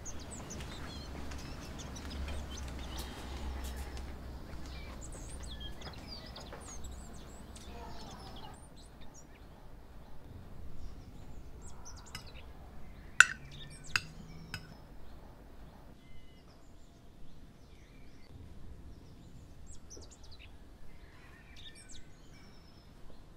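Small birds chirping over a low outdoor hum, then quieter birdsong with a few sharp clinks of a metal spoon against a glass soup bowl about two-thirds of the way through.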